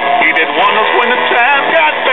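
A voice talking without pause, loud, with nothing else standing out over it.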